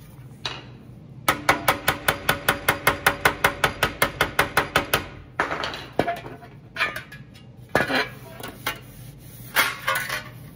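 Body hammer tapping a sheet-metal fender panel against a leather beater bag: a quick run of light, ringing taps, about seven a second for nearly four seconds, working out low spots. A few scattered knocks and rubs follow as the panel is moved on the bag.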